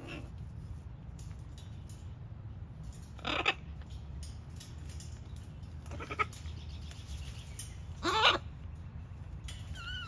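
Macaws giving three short calls, about three seconds in, a brief one near six seconds, and the loudest near eight seconds, over a low steady background rumble.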